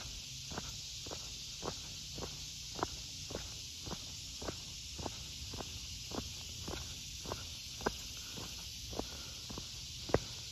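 Footsteps of a person walking at an even pace on a concrete sidewalk, about two steps a second, over a steady high hiss.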